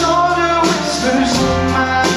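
Live band playing a song with singing, with held notes sounding over a steady full-band backing.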